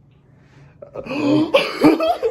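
A man breaks into a loud, gasping laugh about a second in.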